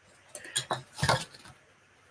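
A quick run of light clicks and clattering knocks as wooden drop spindles are handled and set down on a table, loudest about a second in.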